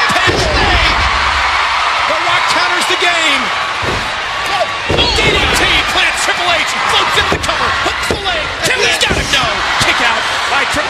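A wrestler's body slamming onto the ring canvas from a DDT right at the start, followed by a loud arena crowd cheering and shouting. A few sharp slaps on the mat sound later, during the pinfall count.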